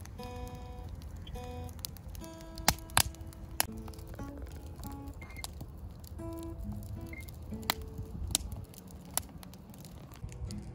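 Acoustic guitar picked slowly, one note at a time, beside a crackling wood campfire whose sharp pops are the loudest sounds, two of them close together about three seconds in.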